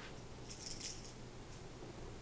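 A brief, light rattle of small hard plastic pieces clicking together, lasting about half a second, a little under a second in.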